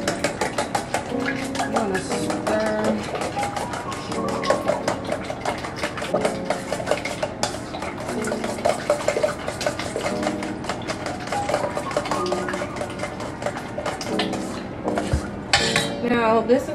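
Eggs being beaten by hand in a stainless steel mixing bowl: a utensil clicks rapidly and steadily against the metal. Background music plays underneath.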